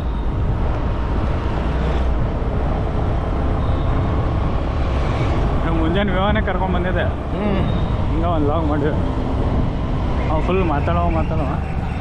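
Steady low rumble of a vehicle on the move, engine and road noise, through town traffic. In the second half a voice rising and falling in pitch comes in three short stretches.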